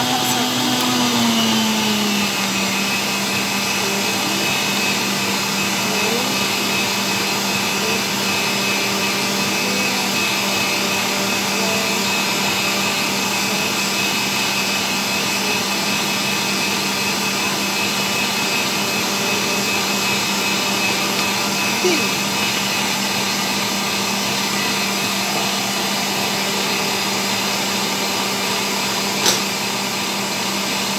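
Electric stand mixer running steadily, its wire whisk beating a foamy egg and sugar mixture in a stainless steel bowl. The motor's hum drops slightly in pitch about two seconds in, then holds steady, with a brief click near the end.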